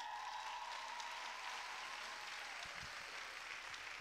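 Audience applause at the end of a gymnastics routine, with one high held tone over it for about the first three seconds.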